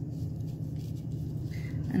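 Grated Parmesan sprinkled from a plastic measuring cup onto roasted potatoes, a faint light pattering over a steady low hum.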